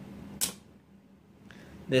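A single sharp plastic click about half a second in, as a Lego Technic magazine is pushed into a Lego brick-shooter gun and its magazine release latches.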